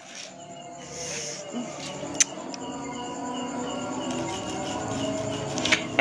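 A single sharp snap of a throw-down firecracker hitting concrete about two seconds in, over a steady background of chirping crickets.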